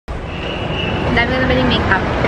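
Busy shopping-mall background noise with people's voices, and a thin steady high tone through most of the first second.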